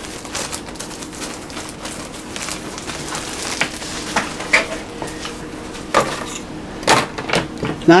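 Thin plastic bread bag crinkling and rustling as a slab of soft rolls is slid out of it onto a wooden cutting board. A few sharp knocks come near the end.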